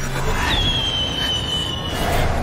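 A sharp, high whistle-like tone starts about half a second in, falls a little in pitch, then holds steady for about a second and a half over a rushing noise.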